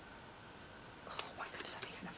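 Faint room tone for about a second, then soft whispered speech.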